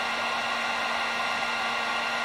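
Heat gun running steadily: a constant rush of blown air with a steady motor hum and whine, unchanging throughout.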